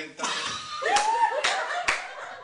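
A man laughing loudly and exclaiming, clapping his hands three times sharply in the second half.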